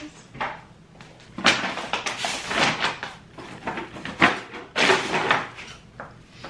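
Paper shopping bags and luggage being shifted around by hand: a run of rustles, scrapes and knocks, with the sharpest knock about four seconds in.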